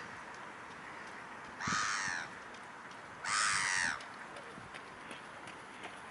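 A bird calls twice, loudly, each call about half a second long and about a second and a half apart.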